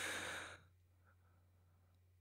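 A person's long, breathy sigh that fades out about half a second in. It is followed by near silence with a faint steady low hum.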